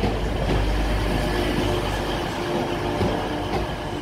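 TransPennine Express Class 185 diesel multiple unit moving along a station platform: a steady low engine drone with wheel and rail noise.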